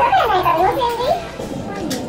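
Speech: a voice asking a short question in Japanese, high-pitched and sliding up and down, for about the first second and a half, then quieter.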